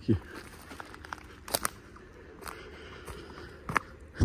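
Footsteps on dry leaf litter and twigs, with a few sharp separate snaps and crackles.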